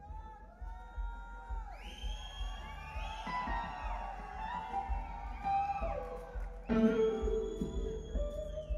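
Live electric guitar solo with band: sustained lead notes bent up and down in pitch, over bass and drums. A loud new note comes in and is held near the end.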